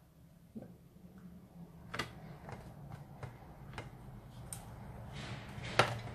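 Paper and a hand hole-punching tool being handled on a craft table: a few light clicks and taps, the sharpest near the end, with soft paper rustling building toward the end.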